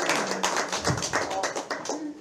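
Applause from a small audience, hand claps thinning out and dying away near the end.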